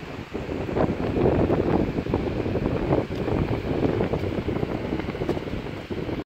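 Strong wind buffeting the microphone: a rough, gusty rumble that rises and falls irregularly.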